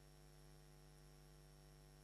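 Near silence with a faint, steady electrical mains hum and a thin high tone above it, unchanging throughout.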